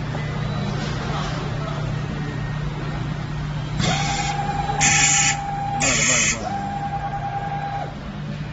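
Cable shield and braid cutting machine working on an inserted cable. About four seconds in, a steady whine starts and runs for about four seconds, dipping briefly near the end. Over it come three short bursts of hiss about a second apart, all above a constant low hum.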